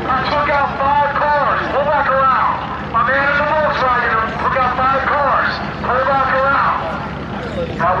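Indistinct talking throughout, over a steady low rumble.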